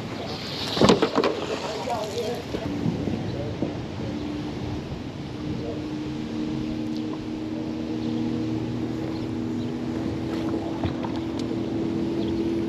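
Electric bow-mount trolling motor running with a steady, even hum, after a single thump about a second in.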